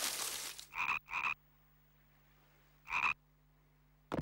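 A frog croaking three times, two calls close together about a second in and a third near three seconds in, after a noise that fades out at the start.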